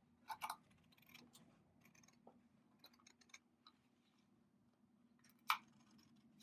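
Scissors snipping through fabric backed with fusible web: a scatter of short, quiet cuts, the sharpest a little past five seconds in.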